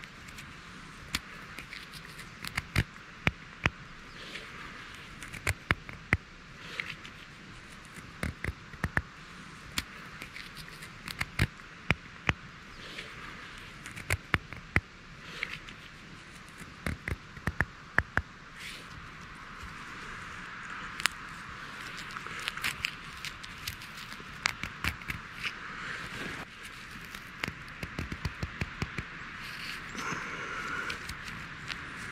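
Irregular sharp clicks and crackles of dry rotten wood and ground litter being handled, over a steady high hiss. The clicks come singly and in small clusters, and grow denser in the last third.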